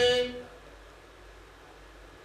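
A man's unaccompanied chanted recitation of verse ends on a held note about half a second in, followed by a pause with only faint room noise.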